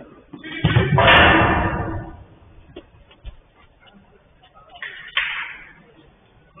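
Men shouting during a five-a-side football game: a long, loud shout about a second in and a shorter one near the end, each starting with a sharp bang.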